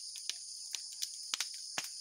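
A steady high-pitched chorus of insects, with a handful of sharp crackles from an open fire of burning coconut shells and husks.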